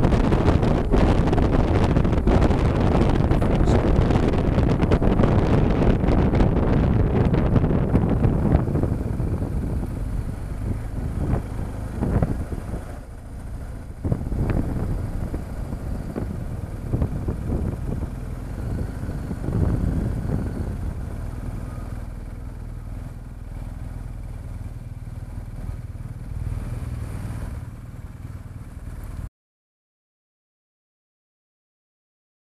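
Wind rushing over the microphone with a BMW R1200GS boxer-twin motorcycle engine underneath at highway speed, dying down after about eight seconds as the bike slows to a low-speed roll with the engine ticking over. The sound cuts off suddenly near the end.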